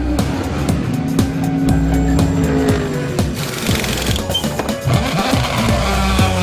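Background music with a steady beat, mixed with an Acura ARX-01c sports-prototype race car engine at high revs. The engine's pitch holds, then drops about halfway through, and a rush of noise rises at the same point.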